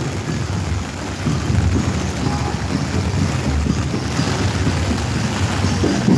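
Heavy rain falling, a steady dense hiss, with uneven low rumbling of wind on the microphone.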